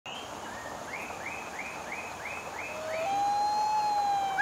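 Rushing stream water, a steady hiss, with a bird repeating a short chirping note about three times a second. Near the end a long steady tone comes in and holds.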